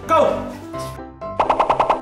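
An excited shout of "Go!" over light background music, then near the end a rapid rattling burst of about seven sharp hits in just over half a second: an edited percussive transition sound effect.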